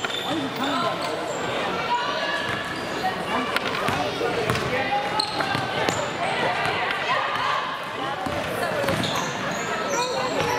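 Basketball being dribbled on a hardwood gym floor among indistinct voices of players and spectators, echoing in a large hall.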